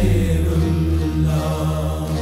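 Sufi devotional chant (zikr) music: voices hold sung notes over a deep, steady bass drone.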